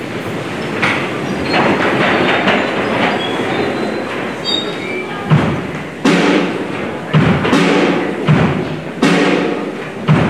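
An audience rising to its feet, a dense clatter and shuffle of seats and bodies. About five seconds in, a worship band's drum kit starts the song with heavy beats about every two-thirds of a second, with keyboard and guitar under them.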